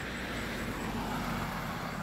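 Steady background rumble of road traffic, heard as an even hiss and hum with no distinct events.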